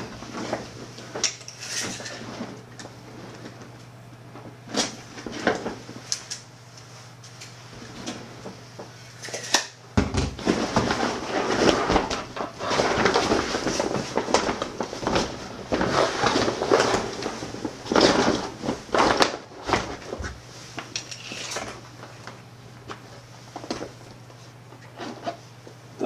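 Stiff, waterproof-coated 400-denier nylon of an Ogio All Elements 3.0 roll-top bag rustling and crinkling as it is handled, in irregular bursts that are busiest from about ten to twenty seconds in. A low steady hum runs underneath.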